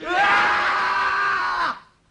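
A man's loud yell, held at one pitch for under two seconds, dipping slightly and cutting off suddenly near the end.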